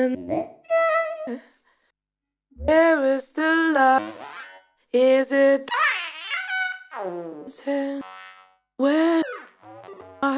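A sung vocal sample played through the Korg KAOSS Replay's vocoder and voice-synth effects. It comes as about five short, robotic-sounding phrases, each a little different in tone as the effect is changed, with brief gaps between them.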